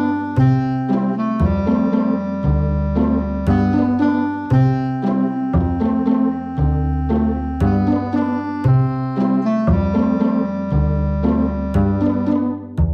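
Upbeat background music with piano or keyboard over a bass line, the notes changing about once a second in a steady beat.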